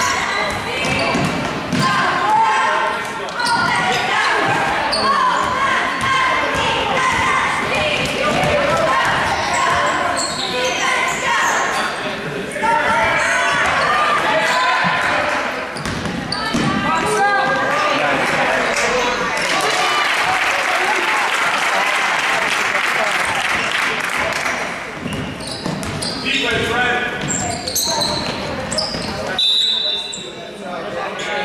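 A basketball being dribbled on a hardwood gym floor during play, with the thuds echoing in a large gym, over a steady mix of spectators' voices and shouts.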